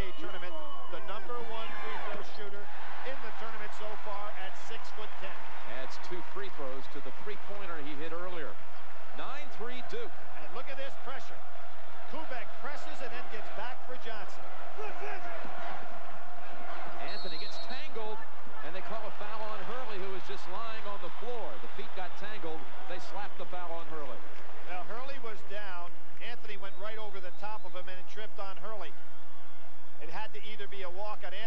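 Basketball bouncing on a hardwood court, short repeated thuds, over the murmur of an arena crowd.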